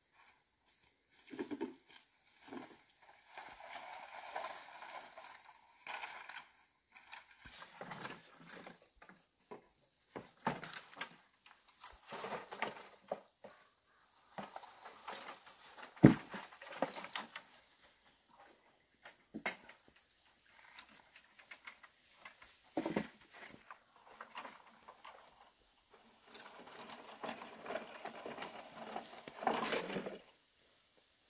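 Long bamboo poles being handled and dragged over the ground, with scraping and rustling of dry grass and leaves in irregular bursts. Sharp knocks of pole against pole, the loudest about halfway through.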